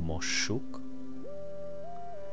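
Soft background music of long held tones, the melody stepping up in pitch about a second in. The end of a spoken word is heard at the very start.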